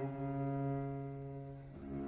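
Music: a slow melody on a low bowed string instrument. A long held note fades, and a new note begins near the end.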